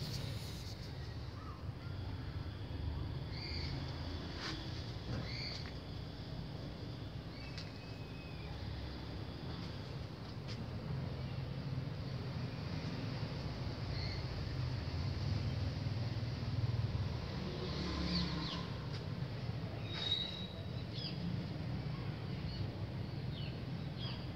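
Outdoor ambience picked up by a Samsung Galaxy A3 (2015) phone's microphone: scattered short bird calls over a steady low rumble.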